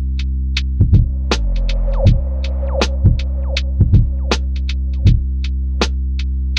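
Instrumental lofi hip hop beat: a sustained low bass chord under a drum pattern of deep thumps and light high ticks. A hazy synth pad with gliding tones comes in about a second in, and the bass chord changes at the same moment.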